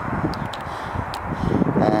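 Wind buffeting the microphone, a steady rumbling noise with a few faint ticks.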